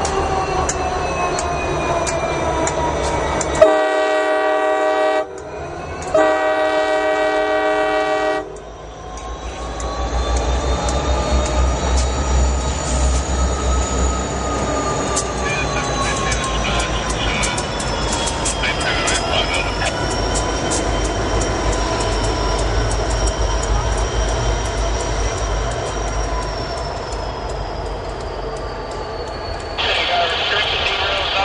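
CSX SD60 diesel locomotives passing slowly, engines rumbling, with two blasts of a multi-chime locomotive horn about four and six seconds in, the second one longer. After the horn, a long wavering wheel squeal runs over the low rumble of the moving train.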